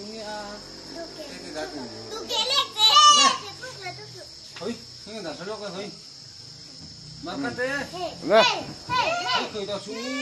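Several young children talking and calling out in high voices, loudest about two and a half seconds in and again near the end, with a steady high chirring of crickets behind them.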